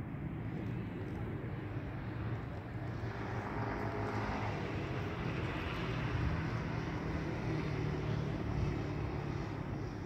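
Road traffic: a steady low rumble, with a fuller rush of noise about three to six seconds in as a vehicle passes.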